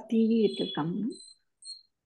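A man's voice holding a drawn-out syllable for about a second, with a thin high tone behind it. Two short high-pitched chirps follow near the end.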